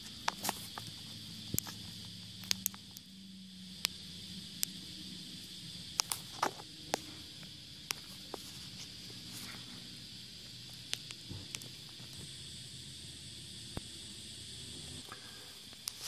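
Handling noise in a truck's engine bay: scattered sharp clicks and taps, a dozen or more, irregularly spaced, over a steady high-pitched hiss.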